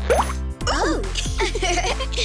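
Cartoon background music with a quick rising pop-like sound effect near the start, then brief voice sounds over the music.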